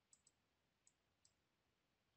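Near silence, with a few very faint short clicks.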